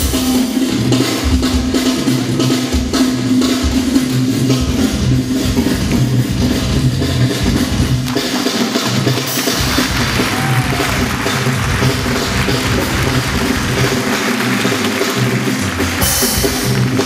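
A live band playing Bulgarian-style kocek dance music, with a drum kit keeping a steady beat under electric bass and keyboard. A brighter hiss thickens the top of the sound from about nine seconds in.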